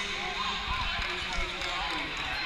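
Indistinct voices in a large tournament hall, with a few dull low thuds around the middle.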